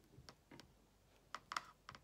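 Near silence with about five faint, short clicks in two seconds, spaced unevenly.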